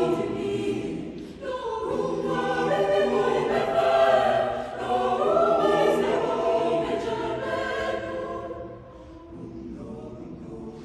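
Mixed high school concert choir singing in parts, the phrases broken by short breaths about a second and a half in and again about five seconds in, then singing softly near the end.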